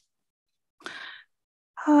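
A speaker's short audible breath, a sigh-like exhale about a second in, heard through the video-call audio, followed near the end by the start of her speech.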